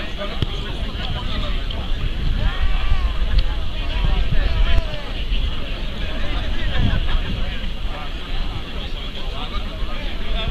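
Indistinct conversation of several men's voices, heard from a distance over a steady low rumble.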